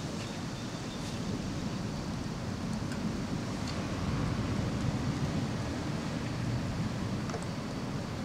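Storm wind blowing hard, a steady rushing noise that also buffets the microphone, swelling a little midway.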